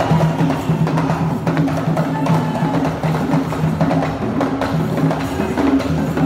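Live Ugandan traditional hand drums playing a fast, dense rhythm of repeated deep pitched strokes and sharp higher slaps, accompanying a dance.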